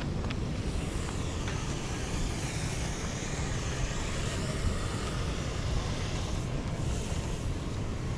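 Wind buffeting the microphone: a steady low rumble, with a fainter hiss above it that swells in the middle.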